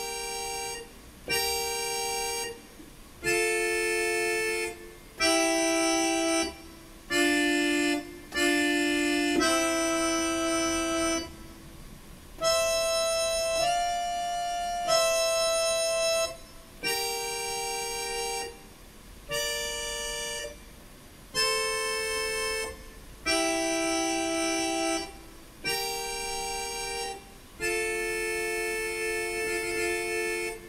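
Yamaha PSR-S670 arranger keyboard playing a melody in thirds. Held two-note chords come in short phrases of one to two seconds, with brief pauses between them and no drum accompaniment.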